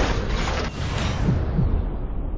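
Logo sting sound effect: two swishing swells, one at the start and one just under a second in, over a steady deep rumble.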